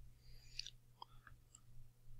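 Near silence: room tone with a steady low hum and a few faint small clicks.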